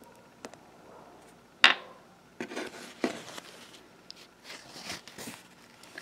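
Hands handling a small plastic toy figure and a cloth: a sharp tap about a second and a half in, then a few seconds of soft rustling and rubbing.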